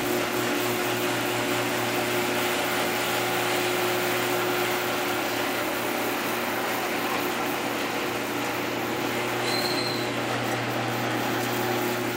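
Electric garage door opener raising a sectional garage door: a steady mechanical hum with the even noise of the door travelling up its tracks.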